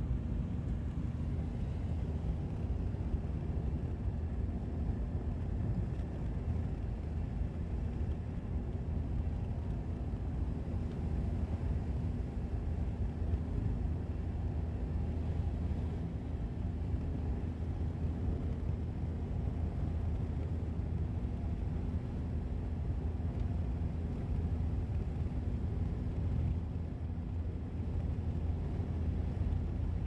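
Car driving at a steady speed: a continuous low rumble of engine and tyres on the road, with a faint steady hum.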